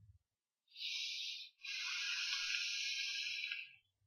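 Airy hiss of someone taking a hit on an electronic cigarette (vape) and blowing out the vapour: a short hiss about a second in, then a longer one of about two seconds.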